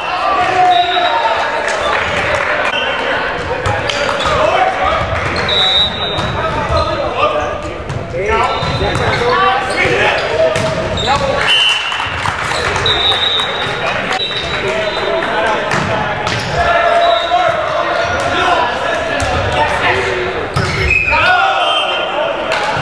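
Volleyball play in a large reverberant gymnasium: players' voices calling and talking, with balls hitting hands and bouncing on the hardwood floor as repeated sharp knocks. A few short, high squeaks of sneakers on the floor.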